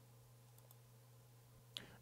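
Near silence: room tone with a faint steady low hum and a faint click or two.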